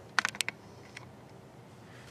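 A quick run of five or six small sharp clicks, then a single faint click about a second in: glass crystal beads clicking against each other as the beadwork is turned in the fingers.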